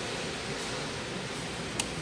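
Furnace ECM blower motor running with a steady hiss of air as its speed stages are switched back down from second-stage cooling, its current draw falling. A single switch click near the end.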